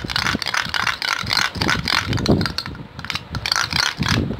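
Metal spoon stirring and scraping around a small metal bowl, mixing a thick powder-and-liquid face-pack paste: a quick, irregular run of scrapes and clinks.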